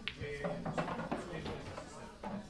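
Faint voices talking in the background, with a single sharp click near the start.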